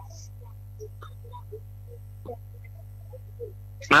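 Steady low electrical mains hum in the recording during a pause in speech, with a few faint soft blips over it.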